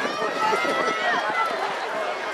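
Several voices shouting encouragement trackside as runners go by, with long drawn-out calls rising and falling in pitch overlapping one another.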